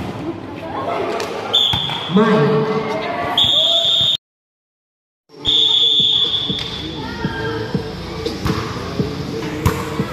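Volleyball play: the ball being struck with sharp slaps, players and onlookers calling out, and short high whistle blasts. The sound drops out completely for about a second around the middle.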